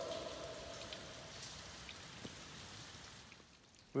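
The echo of a shouted "hello" ringing in a deep vertical cave shaft: a steady hum that dies away over about a second and a half, leaving a faint hiss that fades out. A single faint tick comes about two seconds in, and the sound cuts off abruptly near the end.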